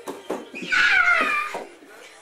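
A young child's high-pitched squeal, about a second long, wavering and sliding down in pitch. A couple of short thumps come just before it.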